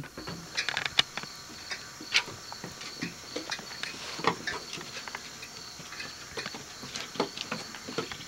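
Raccoons scuffling on wooden deck boards: irregular light taps and scrapes of their claws and feet as they wrestle.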